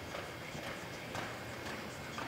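Hoofbeats of a horse loping on soft arena dirt, short muffled strikes about twice a second, the loudest a little past the middle.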